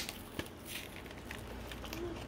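Faint crinkling of a foil toy blind bag and a light click from its plastic packaging as confetti is shaken out onto a table.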